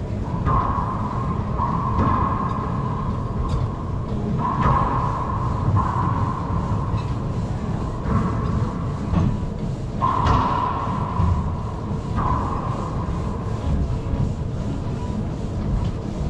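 Racquetball rally: the ball cracks off racquets and the court walls about eight times at uneven intervals. Each hit leaves a short ringing echo in the enclosed court, over a steady low rumble.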